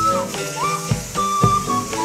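Background music: a clear, flute-like melody holding long notes, with a short higher note about half a second in, over a plucked-string accompaniment.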